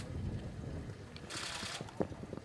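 Wind buffeting the microphone as a low rumble, with a short burst of hiss past the middle and a sharp click at the end.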